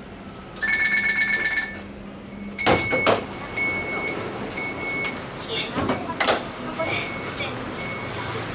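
Light rail tram at a stop giving its door-closing warning: a fast two-tone beeping for about a second, then two loud thumps as the doors shut. Broken single-tone beeps and two more clunks follow over the tram's steady running noise.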